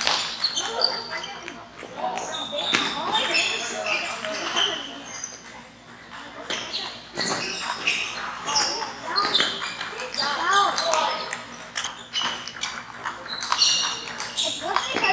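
Table tennis ball clicking off paddles and the table during rallies, with other balls from nearby tables and a hubbub of many people talking in the hall.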